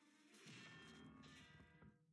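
A slapstick crash-and-clang sound effect over light music. It hits about half a second in, rumbles and rings for about a second and a half, then fades out.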